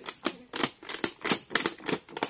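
Plastic sack being crumpled and wrapped shut by hand, an irregular run of crisp crinkles and crackles.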